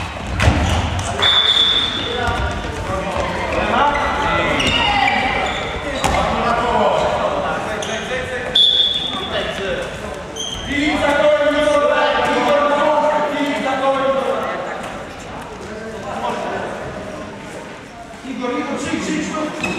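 Handball game in a large sports hall: players shouting to each other while the ball bounces on the court. Two short blasts of a referee's whistle, about a second in and again about halfway through.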